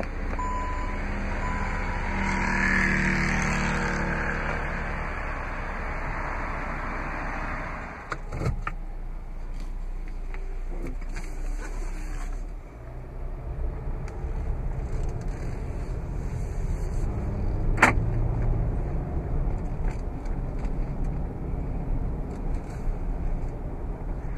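Power liftgate of a 2015 Jeep Cherokee Trailhawk closing under its motor for about eight seconds, with a short beeping tone at the start and a thump as it shuts. After that comes a steady low rumble of the vehicle heard from inside the cabin, with scattered clicks.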